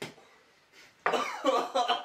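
A man coughing and gagging hard, starting about a second in, a gag reaction to a foul-tasting Bean Boozled jelly bean.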